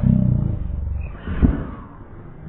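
A low rumbling jostle, loudest in the first second, then a sharper thump about one and a half seconds in: a sudden jerk shaking the couch and the camera.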